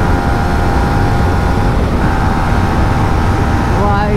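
Yamaha MT-15's 155 cc single-cylinder engine running hard near top speed at about 120 km/h, a steady high engine note under heavy wind rush on the camera microphone. The engine note breaks briefly about two seconds in, as the bike is shifted from fifth to sixth gear.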